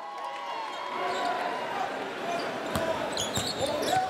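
Basketball dribbled on a hardwood court, a few sharp bounces in the second half, over the voices of an arena crowd.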